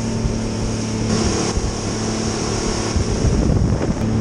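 Outboard motor running steadily at speed, pushing a planing boat, with wind buffeting the microphone and water rushing from the hull.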